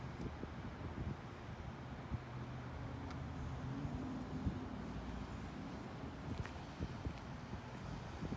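Quiet outdoor background: a low steady hum with light wind on the microphone and a few faint ticks.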